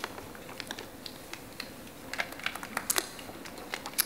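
A string of light, irregular clicks and taps, a dozen or more over a few seconds, with no steady rhythm.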